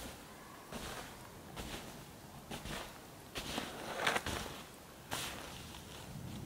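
Footsteps in snow, a soft step roughly every second, faint as the walker moves away uphill.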